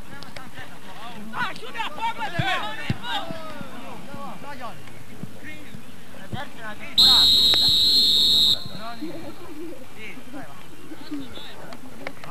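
Players shouting on a football pitch, then one long blast of a referee's whistle, a steady shrill tone about seven seconds in that lasts about a second and a half and is the loudest sound.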